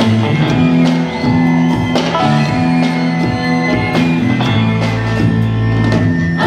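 Live band playing an instrumental passage on electric guitar and drum kit over a steady, prominent bass line, in Mexican regional style with a rock feel.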